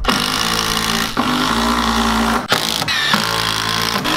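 Cordless drill/driver running at speed, driving screws into a wooden window trim board, in three runs separated by brief stops about a second in and about two and a half seconds in.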